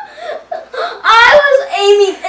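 A young man whimpering and moaning in pain, with a louder drawn-out cry about a second in, from being hit in the neck by an airsoft BB.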